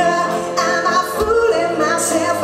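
Live pop-rock band: a woman singing lead over electric guitar, drums and cymbals, with a drum beat about a second in.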